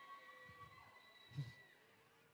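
Near silence: faint room tone with a thin steady whine and one soft, brief sound about one and a half seconds in.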